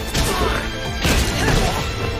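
Anime fight sound effects: a kick landing, with two hard impact hits about a second apart, over background music.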